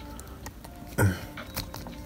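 Faint clicks and rubbing of fingers working the joints of a plastic action figure, with one short voiced sound about a second in.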